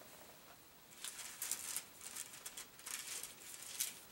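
Pages of a Bible being leafed through: a string of soft, irregular paper rustles and flicks starting about a second in, the sharpest one near the end.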